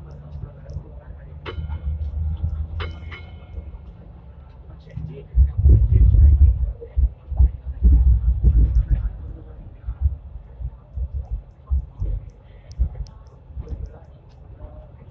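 Hong Kong Light Rail Phase I car running along the track, with an uneven low rumble and thumping from its running gear. The rumble is heaviest in the middle. Two short ringing tones come early on.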